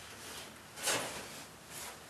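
Scuffling and scraping in a wire rabbit cage as an arm is drawn out, with a sharper scrape about a second in and a smaller one near the end.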